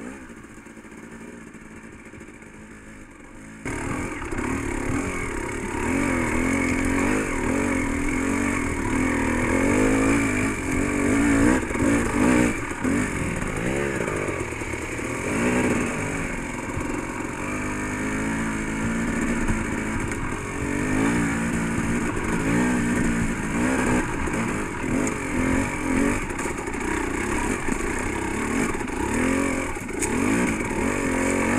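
Dirt bike engine heard from on board, running low for the first few seconds, then opening up suddenly about four seconds in. It then revs up and down under load as the bike climbs a muddy, rocky trail.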